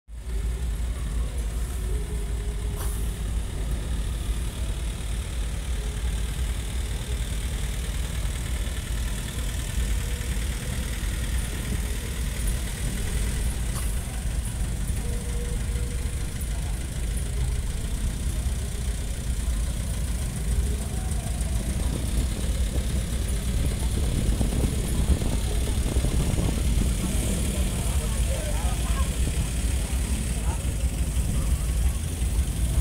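Steady low rumble of vehicle engines from a slow-moving procession float and the motorcycles around it, with faint voices in the background.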